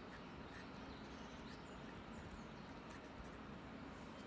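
Faint outdoor background noise, steady throughout, with a few faint, short, high bird chirps.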